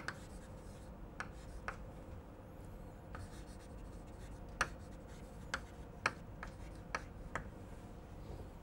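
Chalk writing on a chalkboard: a handful of short, sharp taps and strokes of chalk, faint and scattered, more of them in the second half.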